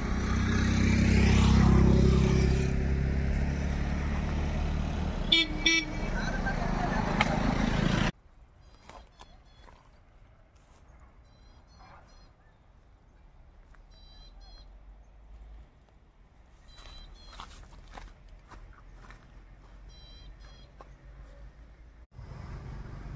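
A motor vehicle running close by, its engine swelling about two seconds in, with a short horn toot about five and a half seconds in. At about eight seconds the sound cuts abruptly to quiet outdoor ambience with faint, short, high chirps now and then.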